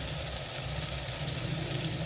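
Chopped tomatoes frying in hot oil in an aluminium pot: a steady sizzle, with a steady low hum underneath.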